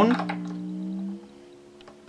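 The freshly fitted low E string of an acoustic guitar ringing after a single pluck and dying away about a second in. The string is not yet stretched or tuned up to pitch.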